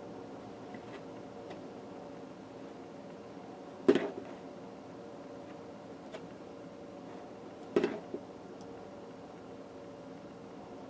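Two sharp knocks about four seconds apart, the second a quick double, as hands folding a cotton T-shirt bump the work surface, over a low steady room hum.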